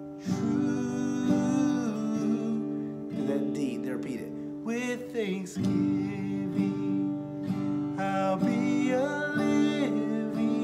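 A man singing a slow worship song over an acoustic guitar strummed by hand without a pick, in slow down strums. A new chord is struck about a third of a second in and another about five and a half seconds in, each left ringing under the voice.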